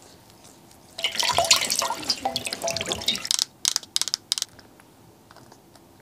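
Water splashing and dripping for about two seconds as a soaked cloth is pressed against the face, then a quick run of sharp clicks from a pump bottle dispensing into a palm.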